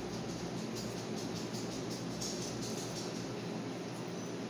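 Faint chewing of a shrimp, with a few soft mouth clicks near the middle, over a steady background hum and hiss.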